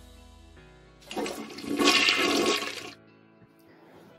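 A toilet flushing: a rush of water that swells in about a second in, peaks, and dies away after about two seconds, over faint background music.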